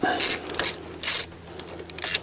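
Socket ratchet clicking in two short bursts about a second apart as a 10 mm bolt is run back in.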